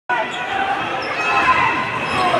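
Live basketball game in an arena: many voices of players and spectators mixing together, with the ball bouncing on the hardwood court.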